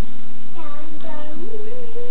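A small child singing: a few short sung notes starting about half a second in, then one long, slightly wavering note held through the end.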